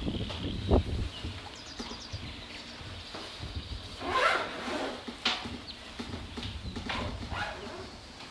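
Birds calling, with a few short harsh calls in the second half and faint high chirps, over a low thump about a second in.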